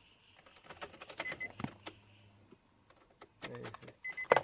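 Handling noises as the LED footwell light strip is pressed against the underside of the dashboard: a quick run of clicks and scrapes in the first two seconds and a few more near the end. A short electronic beep sounds a little over a second in.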